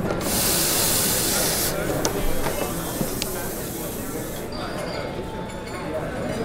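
Café background noise: an espresso machine's steam wand hisses for about a second and a half, then cups clink a couple of times over background chatter.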